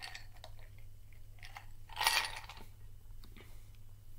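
Ice cubes clinking and knocking in a glass tumbler as it is drunk from and handled, a scatter of small clicks with one louder short noise about two seconds in. A low steady hum lies underneath.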